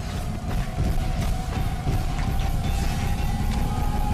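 Dramatic film-trailer music with heavy drums and a long held high note, laid over battle hits and impacts.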